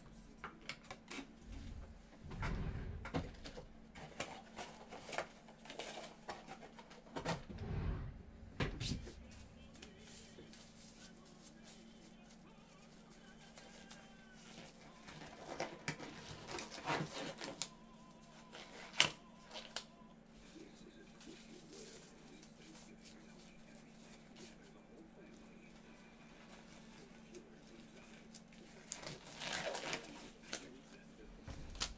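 Scattered light clicks, taps and handling noises over a steady low hum, with a few dull bumps in the first nine seconds and one sharper click a little past halfway.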